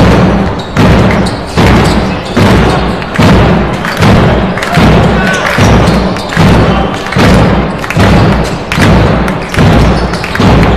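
A big drum beaten by fans in the arena stands, a loud, even beat a little more than once a second, each beat dying away in the hall's echo before the next.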